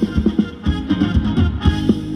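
Live band playing Thai ramwong dance music, with a steady drum beat under sustained instrumental notes.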